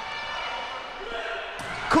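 Volleyball being struck during a rally in a gymnasium, with faint voices from the court and stands; a sharp hit comes near the end.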